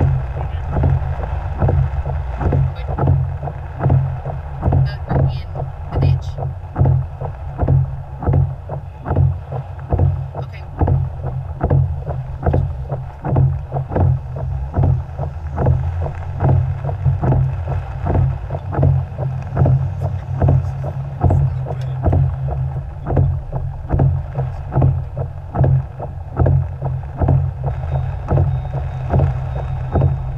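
A car driving through floodwater in heavy rain, heard from inside the cabin: a steady low engine and road rumble with water sloshing and spraying against the car, pulsing a few times a second.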